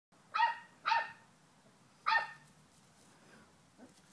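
A dog barking three times: short, high-pitched barks, the first two half a second apart and the third about a second later.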